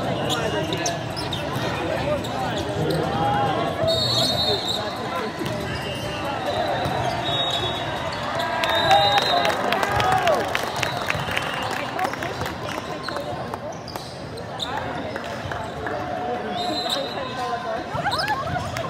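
Indoor volleyball game in a large, echoing hall: players shouting and calling during a rally, the ball being struck and bouncing, over a background of crowd chatter. The loudest moment, a flurry of sharp hits with shouting, comes about nine seconds in as the rally ends.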